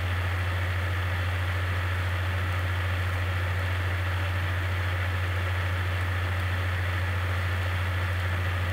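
Steady low hum with an even background hiss, unchanging throughout, with no speech.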